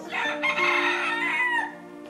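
A rooster crowing once, a call of about a second and a half that falls in pitch at its end.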